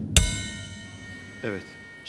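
Dramatic music sting from the show's soundtrack: a single loud crash with bell-like ringing, just after the start, that rings out and fades over about a second. A brief voice-like sound follows about a second and a half in.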